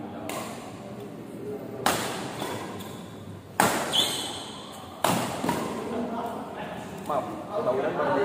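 Badminton rackets striking a shuttlecock in a doubles rally: about four sharp cracks, two of them close together near the middle, each ringing on in a large echoing hall.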